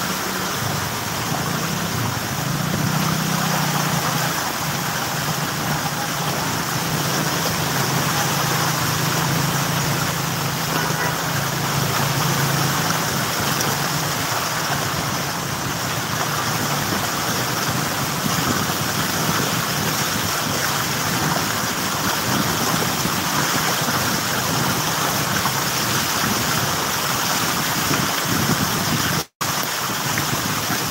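Vehicles wading through floodwater: a steady rush of water sprayed by the wheels, with an engine humming under it for the first half. The sound cuts out for an instant near the end.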